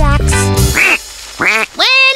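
Bouncy children's song music that stops about a second in, followed by cartoon duck quacks, a few short rising-and-falling calls near the end.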